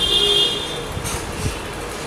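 A short horn toot, a steady high-pitched tone lasting well under a second at the start, then low background noise with a couple of faint knocks.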